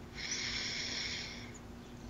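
A person's breath close to the microphone during a pause in talk: a soft hiss that fades out over about a second and a half.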